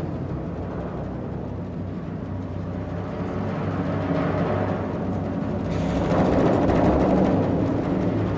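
Percussion ensemble playing timpani, marimbas and drums in rapid continuous strokes over sustained low tones. The sound grows steadily louder and swells fuller after about six seconds.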